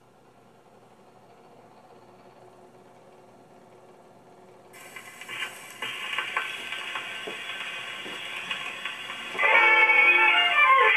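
1921 Zonophone acoustic wind-up gramophone: the record turns quietly at first, then the needle goes into the groove about halfway through, giving surface hiss and a few clicks. Near the end a 1920s jazz-band 78 record starts playing loudly through the horn.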